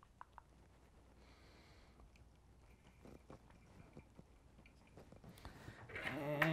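Near silence: room tone with a few faint, small ticks and a brief soft hiss from thread and flash being handled at a fly-tying vise.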